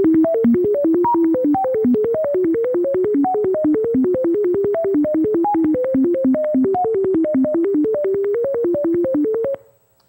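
Computer-generated melody of pure sine tones: a fast, irregular run of short notes, about five a second, with a click at each note change and pitches jumping about, many of them high. It is a sonification of random-matrix eigenvalue spacings from the circular orthogonal ensemble, each note's pitch set by one spacing, about fifty notes in all. It stops suddenly near the end.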